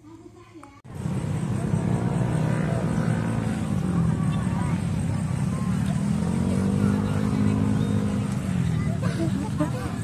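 Road traffic: motor vehicles passing, their engine pitch rising and falling as each goes by, under the babble of people's voices. The sound starts suddenly about a second in.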